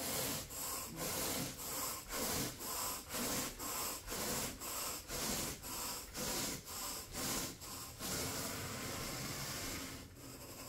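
Carpet grooming rake dragged through thick carpet pile in quick back-and-forth strokes, about two a second, a bristly rubbing sound; near the end the strokes run together into one longer steady rub.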